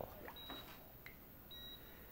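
Hospital patient monitor beeping faintly: two short high beeps about a second apart, part of a steady repeating pattern.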